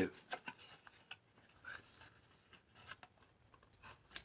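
Faint, irregular scratchy rubbing and small clicks of a bar of soap being handled and rubbed in the fingers.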